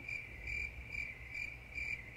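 Cricket chirping sound effect, a high trill that pulses about two and a half times a second, laid into the silence as the 'crickets' gag for an awkward pause.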